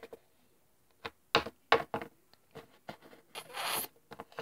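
Small plastic toy figurines handled on a tabletop: a handful of short knocks and clicks spread out, then a brief scrape near the end.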